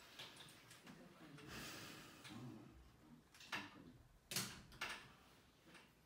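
Quiet room with faint, indistinct murmuring voices and a few short sharp clicks or knocks, the loudest about four and a half seconds in.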